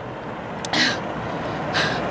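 A tired woman breathing hard after jogging: two audible breaths, about a second apart, over a steady rushing background noise.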